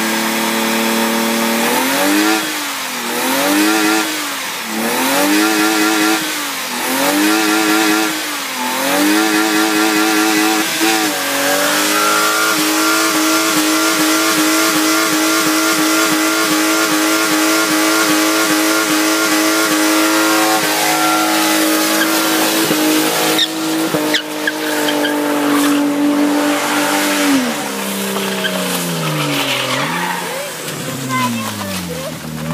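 BMW E36 3 Series engine being revved hard during a burnout: the revs climb and fall about five times, then are held high and steady for about fifteen seconds before dropping near the end. The spinning rear tyres hiss and squeal underneath.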